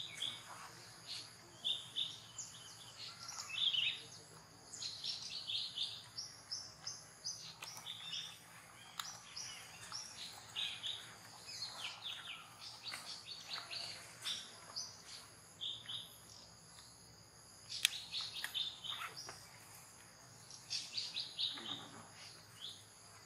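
Birds chirping: many short, high calls coming in clusters, with a single sharp click late on.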